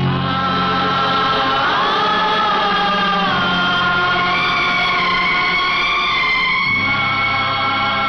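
Film background score: a choir singing long held notes in a slow chant over a steady low drone, starting abruptly and shifting chord every few seconds.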